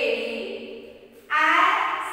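A woman's voice calling out two long, drawn-out sing-song syllables, the second starting past halfway and louder, in the manner of a teacher chanting Hindi letter sounds aloud.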